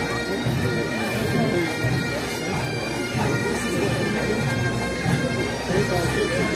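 Bagpipes of a pipe band playing, a steady drone under the tune, with crowd voices mixed in.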